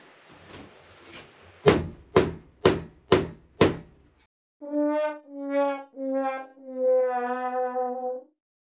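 Five sharp hammer blows on the wall, about half a second apart. After a short silence comes a sad-trombone "wah-wah" sound effect that marks a failed attempt: four notes stepping down in pitch, the last one held and wavering.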